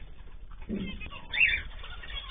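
Aviary birds calling: a short low call about three-quarters of a second in, then a louder high chirp about one and a half seconds in, over a steady low hum.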